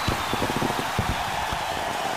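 Steady hiss with scattered, irregular low crackles and thumps, and no music.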